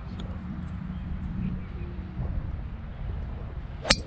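Golf driver striking a ball off the tee: one sharp hit near the end.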